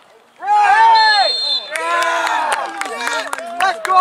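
Spectators yelling and cheering at a soccer match, several voices overlapping in long drawn-out shouts that start about half a second in. A brief high steady whistle sounds about a second in.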